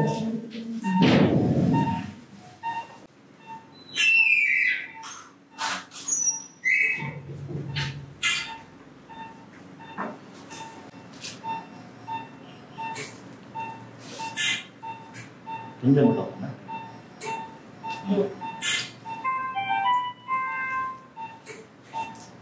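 An operating-room patient monitor beeping: a short, steady, high tone repeating about every 0.6 seconds, with scattered sharp clicks of equipment and brief murmured voices.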